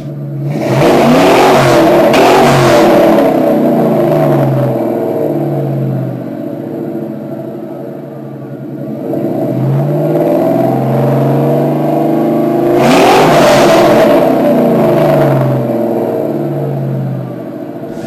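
Ford Mustang GT's 4.6-litre V8 revved with the car standing still, through an exhaust with its catalytic converters cut out and 3½-inch tips. It is revved hard twice, near the start and again about twelve seconds later, with lower revs rising and falling in between.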